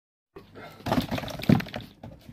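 After a brief silence, clattering and rustling of a cardboard box of instant mashed potato being handled and tipped over a plastic bowl, with a voice mixed in.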